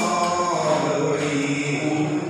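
A man singing a slow, chant-like Mường folk courtship song (hát giao duyên) unaccompanied into a handheld microphone, holding long, drawn-out notes.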